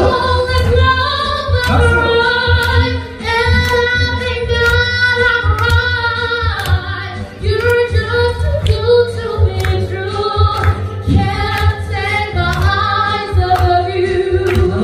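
A woman singing a musical-theatre song live into a microphone, her held notes ringing out in a reverberant hall, over a steady beat of sharp ticks.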